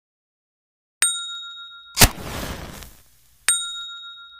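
Intro sound effects: a bright bell-like ding about a second in, a loud noisy hit about a second later that fades away, and the same ding again near the end. Each ding rings on for about a second.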